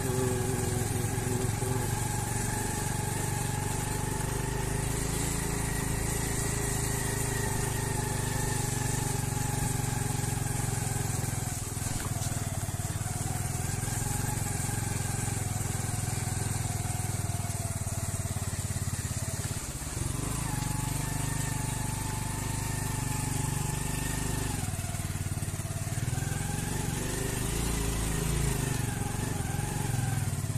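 Motorcycle engine running as the bike rides along at low speed, its note rising and falling with the throttle and dipping briefly about twelve and twenty seconds in.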